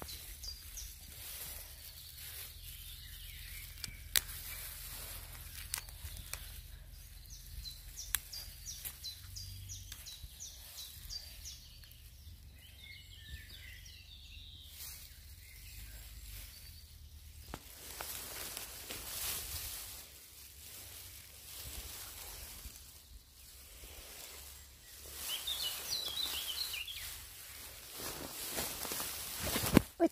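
Woodland ambience with small songbirds calling. A quick run of high short notes repeats several times through the first third, and other chirps come about halfway through and again near the end. Underneath is a low steady rumble, with a few sharp clicks.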